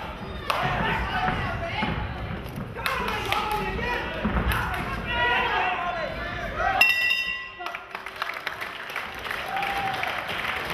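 Voices shouting from ringside over a boxing exchange, with a few gloved thuds, then a ring bell sounding once, about seven seconds in, a sharp ring that lasts under a second, ending the round. Quieter voices follow.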